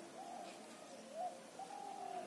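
A bird calling in the background: three short, faint hooting calls, the longest near the end.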